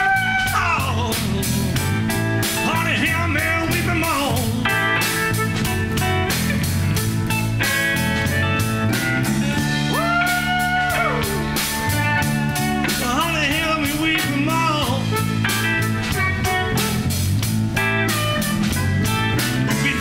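Live electric blues band playing an instrumental break: guitars and drums keeping a steady beat while a harmonica plays long held, bent notes at the start and again about ten seconds in, with shorter wavering phrases between.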